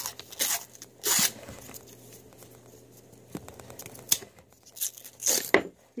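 Paper coin-roll wrapper on a roll of half dollars being torn open in a few short rips, the loudest about a second in, followed by scattered small crinkles and clicks as the paper is pulled back.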